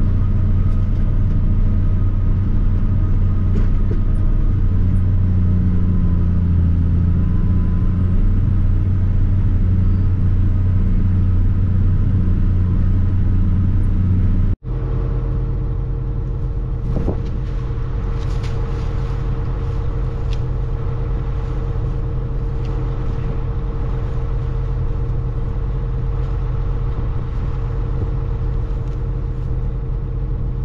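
John Deere 9300 tractor's six-cylinder diesel engine running steadily under load while pulling a deep ripper, heard inside the cab. About halfway through it cuts to the same tractor idling, heard outside beside it, a steadier, slightly quieter hum with a few light clicks.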